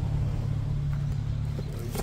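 A steady low mechanical hum, like a motor running, with a man's voice starting right at the end.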